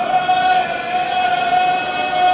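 Ceremonial singing: one long note held at a steady pitch, starting sharply and sustained without a break.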